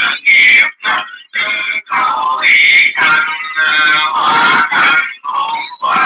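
Music: a voice singing a song, the phrases rising and falling in pitch with short breaks between them.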